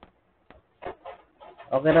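A man's voice begins speaking about a second and a half in. Before it there are only a couple of faint clicks and a few short, brief sounds.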